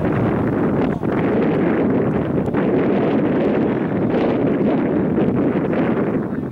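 Wind blowing across the camera's microphone: a loud, steady rushing noise.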